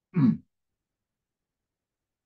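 A man's brief throat-clearing grunt, falling in pitch, lasting about a third of a second near the start.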